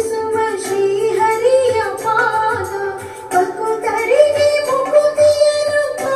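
A woman sings a Kannada film song into a microphone over instrumental accompaniment. She holds long, ornamented notes, and a new, higher phrase begins about three seconds in.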